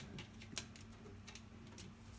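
Faint, scattered light clicks and taps from an African grey parrot clambering out of a plastic bin of paper onto a hand.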